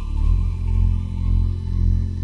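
Background music: a held low drone that swells and fades about twice a second, its low notes shifting about a third of a second in.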